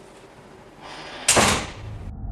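A door slams shut with a sudden loud bang about a second and a quarter in, after a short rising rush of noise.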